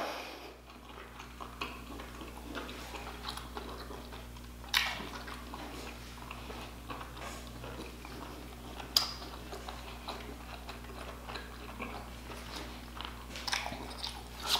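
Close-miked chewing of boiled lobster meat, mouth closed: soft wet mouth clicks and smacks, with two louder sharp smacks about five and nine seconds in.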